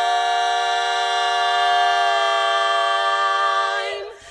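Women's barbershop quartet singing a cappella, holding one long four-part chord steady for nearly four seconds before releasing it near the end.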